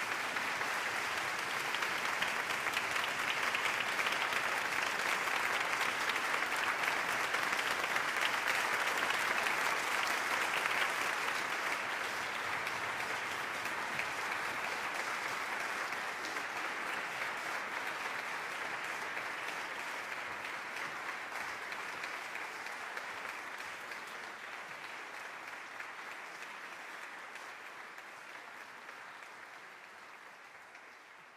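Concert audience applauding, loud at first and then gradually dying away over the second half.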